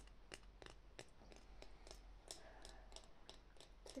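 Faint, light taps on a wooden spoon, repeating evenly about three times a second.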